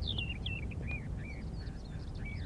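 Small birds chirping: a quick run of short, high chirps that thins out toward the end, over a steady low background rumble.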